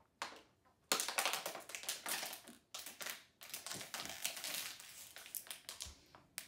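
Thin plastic water bottle crinkling and crackling as it is drunk from and squeezed in the hands, a dense run of sharp crackles starting about a second in.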